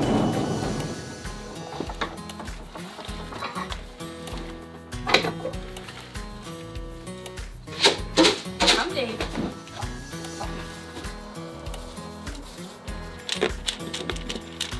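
Background music with a steady beat. It opens under a brief noisy rumble, and a few short, louder sounds come through about five seconds in and again around eight seconds.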